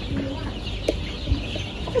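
A large flock of four-week-old layer chicks peeping together, a dense chorus of short high chirps, with a sharp click about a second in.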